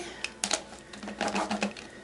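Plastic clicking and rattling from a Barbie Bubble-tastic Mermaid doll's bubble-making mechanism as its tail is pumped by hand: a few irregular clicks, more of them in the second second.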